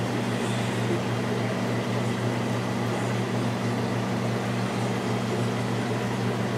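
Steady mechanical hum: several low droning tones held level under an even hiss, unchanging throughout.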